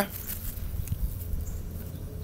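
Faint rustling of a yellowed cucumber leaf being handled, over a low steady rumble.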